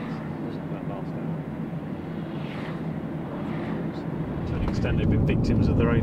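Steady road and engine noise inside a moving car's cabin, growing louder about four and a half seconds in.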